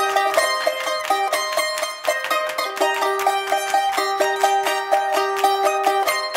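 Charango with guitar accompaniment playing a quick instrumental passage of plucked notes in an Andean folk carnival tune.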